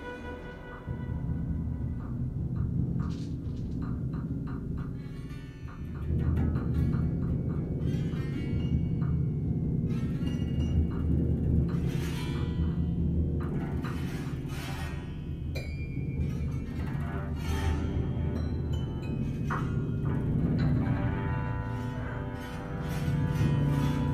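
Free improvisation for violin, cello and percussion: a held high string note fades about a second in, then a dense low drone builds and grows louder about six seconds in, under scattered clicks, taps and strikes.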